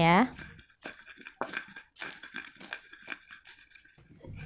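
Pestle crushing peanuts and chilies in a cobek mortar, irregular crunching and scraping strokes as they are pounded coarsely.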